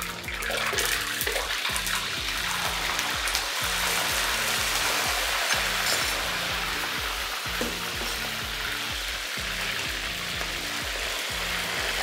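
Chicken pieces going into hot oil in a wok and deep-frying with a steady sizzle that sets in right at the start, over background music with a steady beat.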